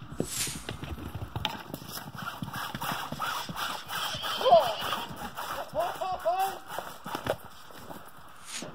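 A horse moving about in place, with a steady patter of hoof thuds and knocks, and a few short rising-and-falling calls about four and a half seconds in and again around six seconds in.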